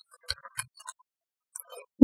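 Plastic felt-tip markers clicking lightly against each other as they are handled and pulled apart: a few quick ticks in the first second and a faint rub near the end.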